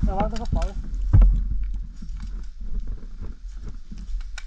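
A short shouted call, then a heavy knock about a second in, followed by scattered crackles and clicks over a steady low rumble.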